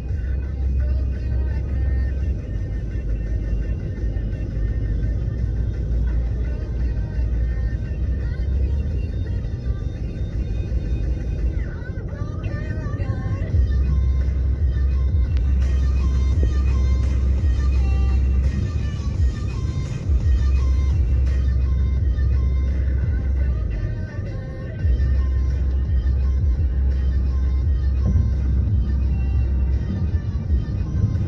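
Music playing over the steady low rumble of a car on the road.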